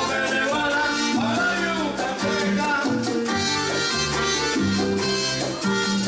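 Live salsa music from a small band led by an electronic keyboard: a low bass line and chords over a steady percussion beat.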